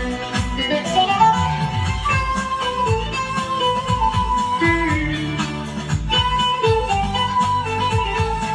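Long-necked bağlama (saz) played with a plectrum: a stepping instrumental folk melody with quick picked notes over sustained lower drone notes, and a rising slide about a second in.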